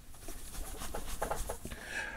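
Faint rustling and shuffling of a person shaking his head hard.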